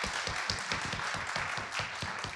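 Audience applauding: many hands clapping in a dense, irregular patter.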